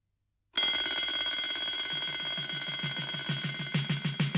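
Twin-bell alarm clock ringing, starting abruptly about half a second in and ringing on steadily. A fast low pulse joins it about two seconds in.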